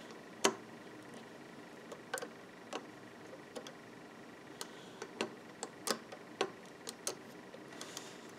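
Faint, irregular small clicks and taps of a metal loom hook against plastic loom pegs and stretched rubber bands as bands are hooked and pulled over the pegs, about a dozen clicks in all, the sharpest about half a second in.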